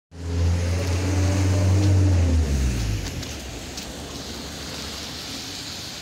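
BAZ-22154 'Dolphin' minibus passing and pulling away: a low, even engine drone, loud for the first two and a half seconds, then dropping in pitch and fading as it moves off. A hiss of tyres on the wet road remains.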